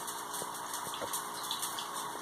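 Faint handling of scrapbook paper being pressed and smoothed onto a glued cardboard box, with a couple of light clicks, over a steady background hiss.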